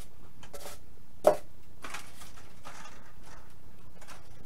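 Handling noises from a small foam RC airplane being lifted off its foam stand and turned over on a table: a few light knocks and rustles, with one sharp, louder knock a little over a second in.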